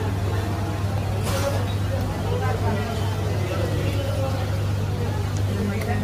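Indistinct voices talking in the background over a steady low hum, with a brief swish about a second in.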